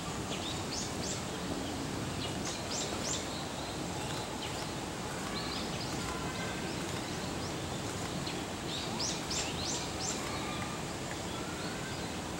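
Steady background noise with scattered short, high-pitched bird chirps coming in small groups, several times.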